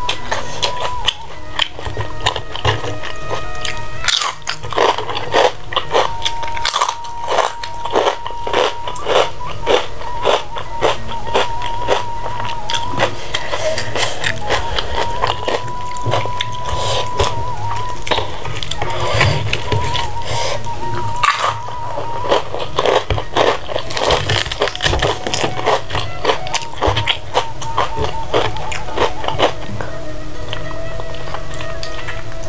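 Close-up eating sounds: a person chewing and biting mouthfuls of food, with many quick sharp clicks and crunches, over steady background music.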